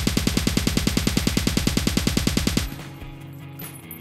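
Edited-in transition sound effect: a loud, rapid, even pulsing of about nine beats a second that cuts off suddenly two-thirds of the way through, leaving a faint low tail.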